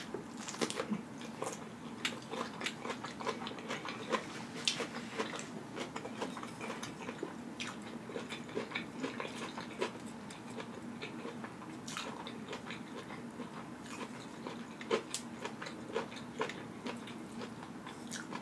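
Close-up eating sounds: crunchy bites and chewing of raw cucumber, a steady stream of irregular crisp clicks and wet mouth sounds.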